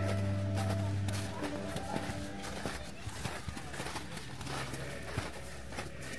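Background music fades out over the first second or so, leaving irregular footsteps on packed snow with faint voices.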